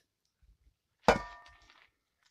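One hard knock with a short ringing tail that fades over most of a second, as a log is swung and struck down.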